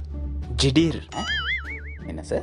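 Comic cartoon-style sound effect: a whistle-like tone whose pitch wobbles up and down about five times a second, coming in about a second in, over steady background music.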